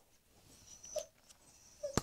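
A dog whimpering faintly, with two short whines, one about a second in and one near the end. The dog is unhappy after being given a bath.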